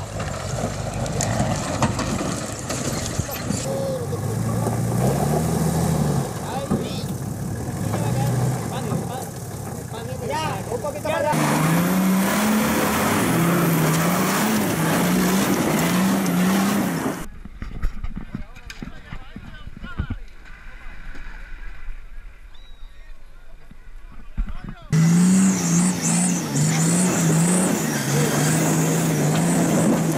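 Off-road 4x4 engines being revved hard in low gear as the vehicles climb rough, rocky slopes, the revs rising and falling over and over as the drivers work the throttle. The sound changes abruptly several times, with a quieter stretch of low rumble in the middle.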